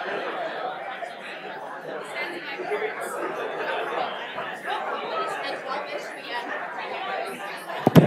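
Indistinct chatter of many people talking at once, echoing in a large lecture hall: an audience waiting before a session begins.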